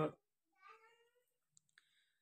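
A faint cat meow, a single short call that rises and then holds, followed by two faint clicks.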